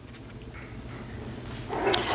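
Maltese puppy making small vocal sounds while it plays with a braided rope toy, growing louder toward the end with a brief sharper sound just before the end.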